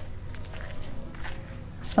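Faint footsteps on dirt ground, soft scattered steps under a steady low background hum.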